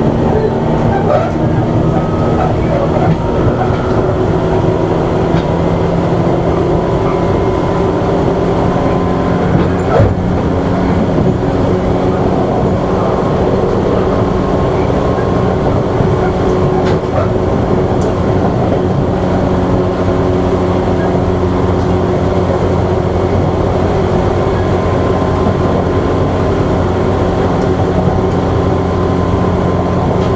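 Tobu 8000-series electric train running at a steady speed, heard from inside a MoHa 8850 motor car: an even rumble with steady motor hum and whine, and a few faint clicks from the track.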